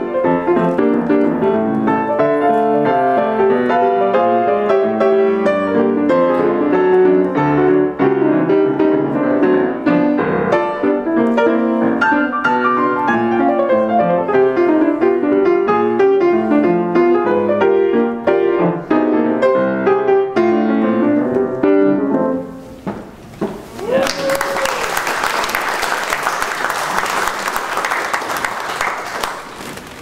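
Solo jazz piano played on a grand piano, a busy improvisation that ends about three-quarters of the way through. The audience then applauds until near the end.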